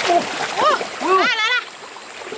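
Hands splashing and grabbing in shallow stream water, over the steady run of the stream. Two high vocal calls of "uuuh" ring out above it, the second long and wavering; these calls are the loudest sound.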